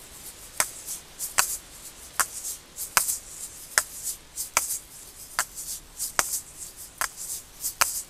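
Asalato being played in both hands, the rotate-and-click exercise: the pair of balls on each cord swings round and clacks together at a steady beat about every 0.8 seconds, with a faint rattle of the filling between clicks.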